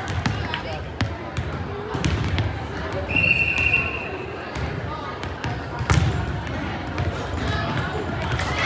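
Volleyballs being hit during passing drills and bouncing on a hardwood gym floor: a string of sharp smacks, the loudest about six seconds in, over the chatter of players in a large echoing gym. A brief high-pitched tone sounds about three seconds in.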